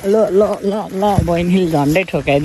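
A young man's voice singing a short repeated phrase in a South Asian language, with some notes held for a moment.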